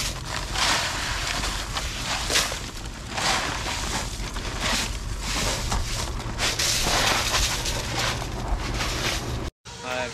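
Crushed ice being poured and shaken from plastic bags over freshly harvested shrimp in woven baskets: a run of rushing, crunching bursts of ice and bag plastic, one after another. It cuts off suddenly near the end.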